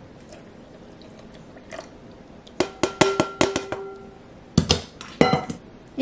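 Kitchen containers clinking and knocking on a countertop: a quick run of taps, some carrying a short ringing tone, about halfway through, then two separate knocks near the end.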